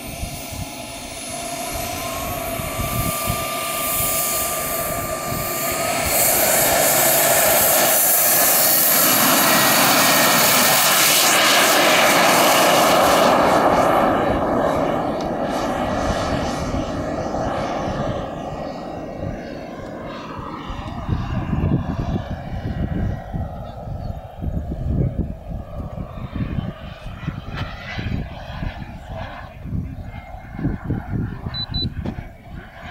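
Radio-controlled T-45 Hawk model jet's engine whining and spooling up, its pitch rising in steps over the first several seconds. It is loudest through the takeoff run and then fades as the jet climbs away. Irregular low rumbling on the microphone fills the second half.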